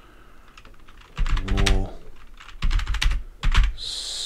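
Computer keyboard typing: a quick run of keystrokes that starts about a second in, after a short pause.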